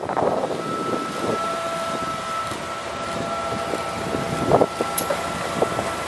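Yale Veracitor 60VX forklift's propane engine running steadily, with a steady high-pitched whine over it and a few short clatters near the end.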